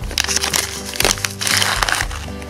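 Thin clear plastic bag crinkling and rustling in the hands as silver-tone metal chain is drawn out of it, irregular scratchy crackles, over steady background music.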